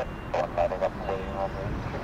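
Airbus A320-214 jet engines running steadily as the airliner taxis, a low continuous rumble. Over it, a person's voice speaks briefly and unintelligibly for about a second.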